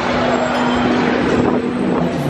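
Busy city street noise: traffic running, with wind on the microphone and a steady low hum throughout.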